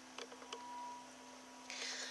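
Quiet room tone with a steady low hum, a few faint clicks, and a soft rustle near the end.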